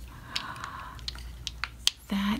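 Small glass nail polish bottles being handled in the hands: several sharp clicks as the bottles and long fingernails knock together, the loudest just before the end, over a soft rustle in the first half.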